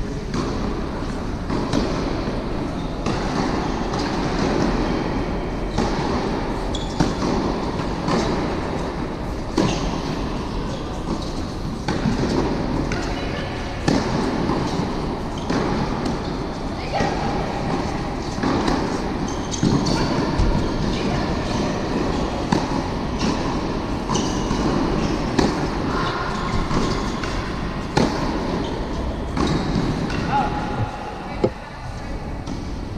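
Tennis balls struck by rackets in a doubles rally on an indoor court: sharp hits every second or two, with a steady rumbling noise underneath.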